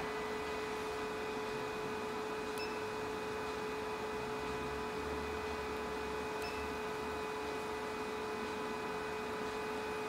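808nm diode laser hair-removal machine running with a steady hum on one tone. A fainter, higher tone comes in about two and a half seconds in and stops about four seconds later, while the handpiece is in use.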